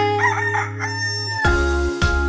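A rooster crowing cock-a-doodle-doo over a held music chord. About a second and a half in, a new children's tune with bell-like struck notes starts.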